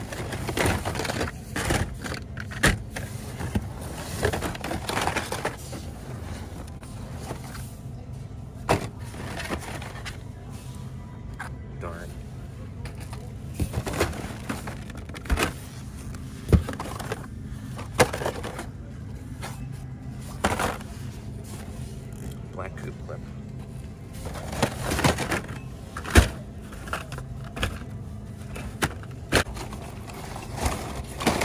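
Cardboard-and-plastic blister packs of die-cast toy cars being shuffled and knocked against one another in a bin, with irregular clacks and slaps. These sounds sit over a steady low hum, faint voices and background music.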